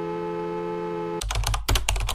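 A steady held chord of background music, which stops a little over a second in and gives way to a quick run of computer keyboard typing clicks.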